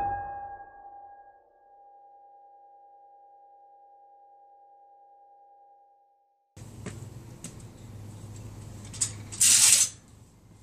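A single keyboard chord from the film's score is struck and rings out as one steady tone, fading away over about six seconds. After a moment of silence comes outdoor background noise with a few clicks and a loud, brief rushing burst near the end.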